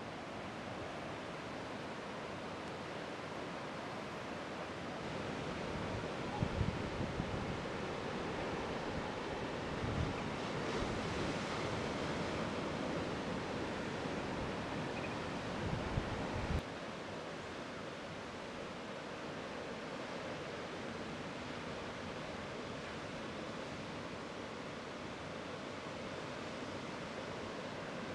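Ocean surf breaking in a steady wash of white water. Through the middle, wind buffets the microphone in low rumbling gusts, and this louder stretch ends abruptly.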